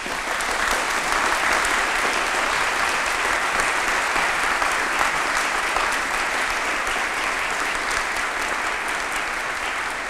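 Audience applauding, swelling quickly at the start and holding steady before easing slightly near the end.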